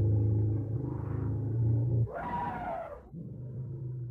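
Low animal-like growl held on one pitch, broken about two seconds in by a louder, higher cry that falls in pitch, then the low growl again.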